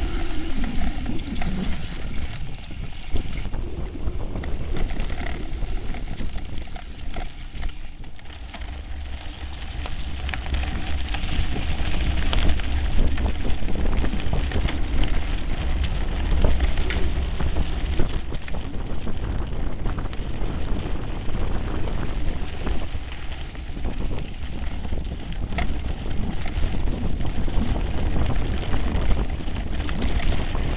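Mountain bikes riding over a rough dirt trail strewn with leaves and stones: a dense crackle of tyre and stone noise with small rattling clicks, over a steady low rumble of wind buffeting the microphone.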